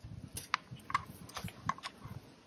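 Several small, sharp clicks and ticks as a locking clamp is set on the plastic injector leak-off return line and the fittings are handled.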